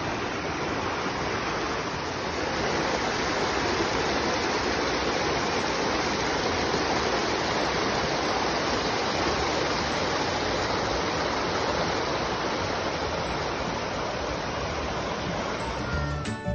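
Shallow rocky stream rushing over stones and small cascades: a steady, even rush of water.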